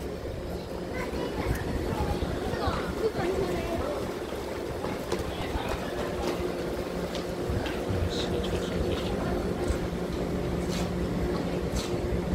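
Steady low hum of trains standing at a station platform, holding a constant pitch and a little stronger in the second half, with faint voices of people on the platform in the background.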